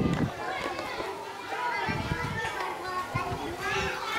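A group of young children's voices chattering and calling out in the background.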